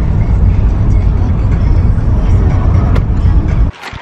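A car driving, heard from inside the cabin as a heavy low rumble of road and wind noise, with music playing along; it cuts off suddenly near the end.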